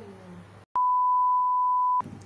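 A loud, steady, pure 1 kHz beep tone of the kind edited in as a censor bleep. It starts sharply with a click about three-quarters of a second in and holds one pitch for just over a second before cutting off abruptly.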